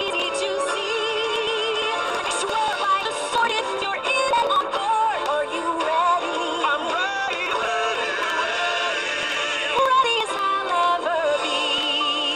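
A song plays: a sung melody with a wavering vibrato over instrumental backing, continuous throughout.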